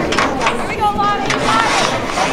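Distant voices calling out across an open sports field, with high-pitched shouted calls in the second half, over a steady background hiss.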